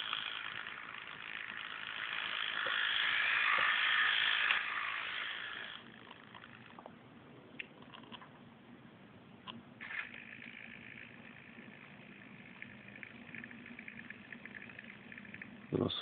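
Small electric gear motors of a 1:55 scale RC crane running: a high whir that builds up while the load is raised slowly and stops about six seconds in, then a quieter whir with a low steady hum starting about ten seconds in and running on.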